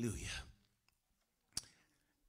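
A man's voice trails off in the first half second, then a single sharp click comes about one and a half seconds in.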